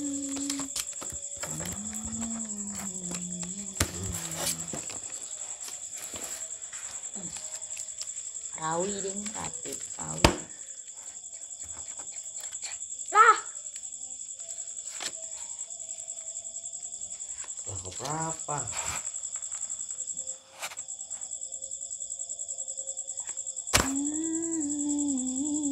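Crickets chirping in a steady high trill throughout. Over it a person hums and makes brief wordless vocal sounds now and then, and there are a few sharp clicks.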